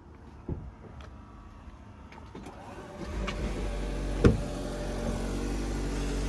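The Mazda CX-60 plug-in hybrid's 2.5-litre four-cylinder petrol engine starting up by itself about three seconds in and then idling steadily. The car runs its engine to supply the 220 V socket that has just been switched on, with no one in the car. A single sharp knock sounds a little after the engine starts.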